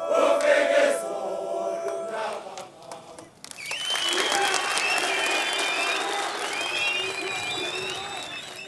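A man sings a line of a song, then from about three and a half seconds in a crowd of schoolboys cheers and claps, with high shouts over the noise.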